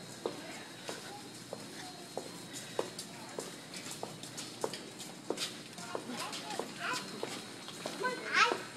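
Footsteps on a concrete walkway: steady, sharp shoe steps a little under two a second, with faint voices in the background.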